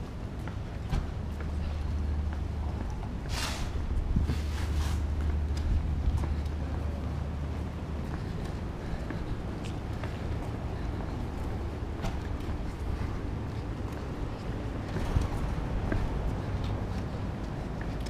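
Footsteps of several people in boots walking on pavement, over a steady low hum that drops away about eight seconds in. Two short rushes of hiss come about three and four and a half seconds in.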